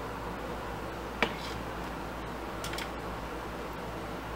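Steady background hiss with a low hum, broken by one sharp click about a second in and two faint clicks near three seconds.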